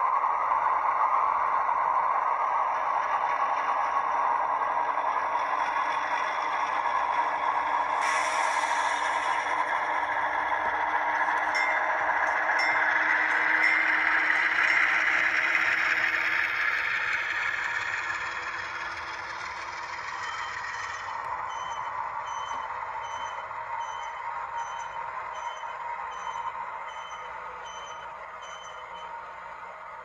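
Sound-equipped ScaleTrains model of a CSX ES44AH, its decoder playing a GE GEVO diesel engine sound. The engine note brightens suddenly about 8 seconds in as the model pulls away, then fades as it runs off along the layout. A faint tone repeats about one and a half times a second in the last third.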